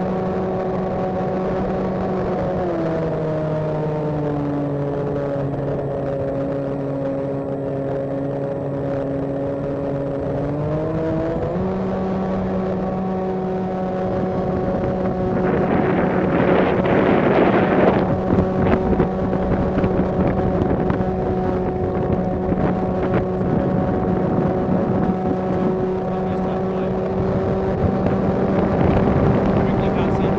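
Flying wing's electric motor and propeller running steadily with a clear buzzing pitch, heard from the onboard camera. A few seconds in the throttle is eased and the pitch drops. About eleven seconds in it climbs back to full. A gust of wind noise rushes over it between about fifteen and eighteen seconds.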